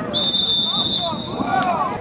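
Referee's whistle blown in one long, steady blast of about a second and a half, over the voices of players and spectators calling out.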